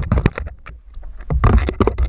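Irregular knocks and rubbing of a handheld action camera, over low wind rumble on the microphone aboard a moving boat. The handling quietens briefly partway through and picks up again.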